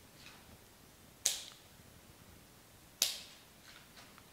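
Two sharp snips, about two seconds apart: shears cutting through a flower stem as it is trimmed down for the arrangement.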